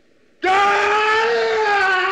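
A loud, long, high-pitched human scream that starts about half a second in and is held on one pitch.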